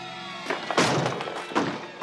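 Two loud, heavy thuds about a second apart, the first longer and rougher, over dramatic background music.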